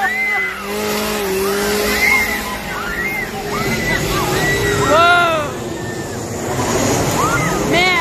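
People screaming and shrieking in short, high, wordless cries, the loudest about five seconds in and a rising one near the end, over a steady low hum.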